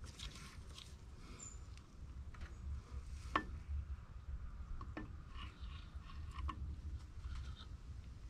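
Faint handling sounds of a water pump being fitted against its gasket on a tractor engine block: light rubbing and scraping, with two small metal clicks about three and five seconds in, over a low rumble.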